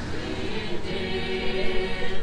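Many voices singing an Orthodox church chant together in slow, held notes, as in a crowd singing during an Easter procession.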